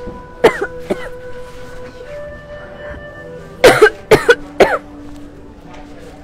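A person coughing close to the microphone: two sharp coughs near the start, then a fit of four or five quick coughs a little past halfway. Soft background music with held notes runs underneath.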